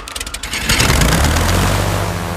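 Small engine of a toy model aeroplane starting up, as a cartoon sound effect: rapid sputtering clicks that speed up, then, well under a second in, catch into a loud, steady running drone.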